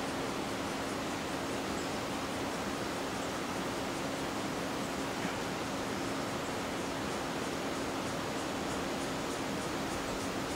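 A steady, even rushing noise with a low hum underneath, unchanging throughout.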